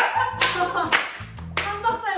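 A few sharp hand claps mixed with loud laughter, over background music with a steady bass beat.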